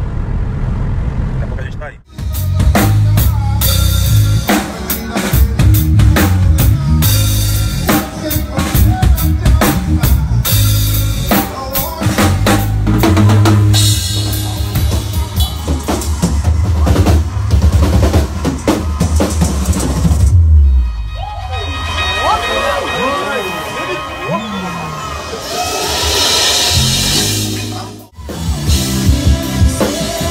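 Car road noise for about two seconds, then a live drum kit played hard with an electric bass, dense fast strokes on drums and cymbals over a heavy low end. After about twenty seconds the playing stops and the audience cheers, with applause swelling near the end.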